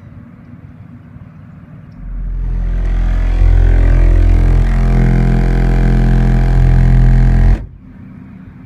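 Car subwoofers driven by two strapped Soundqubed SQ4500 amplifiers playing a 43 Hz test-tone burp for a clamp test. The deep steady tone swells in about two seconds in, holds loud for about five and a half seconds and cuts off abruptly, with the amps held one volume step below clipping.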